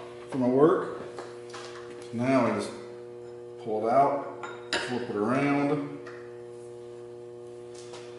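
A man's voice in short, indistinct phrases over a steady electrical hum, with a light metal clink of the steel workpiece being shifted in the milling-machine vise about halfway through.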